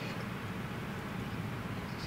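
Steady low rumble of gym room tone, with no distinct sounds standing out.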